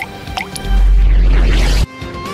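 Cartoon sound effects over background music: two quick upward-sliding bloops, then a very loud, deep, bass-heavy blast lasting about a second that cuts off suddenly.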